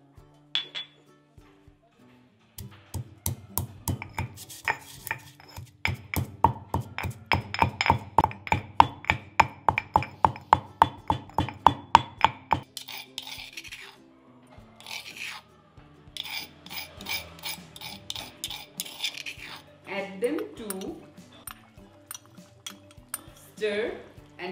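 Stone pestle pounding Sichuan peppercorns in a stone mortar: a steady run of knocks, about three a second, for some ten seconds, then rough grinding and scraping round the bowl. Soft background music underneath.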